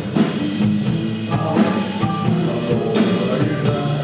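Live rock-and-roll band playing: drum kit keeping a steady beat of about two strokes a second under electric guitar and bass guitar.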